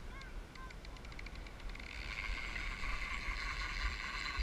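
Surf-fishing reel's drag giving line to a hooked fish: separate clicks that come faster and faster, merging about two seconds in into a continuous high buzz. Wind rumbles on the microphone underneath.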